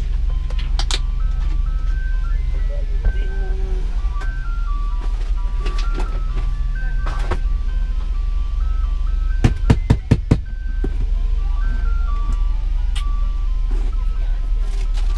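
Ice cream truck chime playing a simple tune one note at a time, over a steady low hum. A quick run of four or five sharp knocks comes about nine and a half seconds in.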